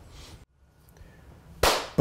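Near silence, then about a second and a half in a single short, sharp burst of noise, like a whip-crack hit, that fades quickly into the host's opening words.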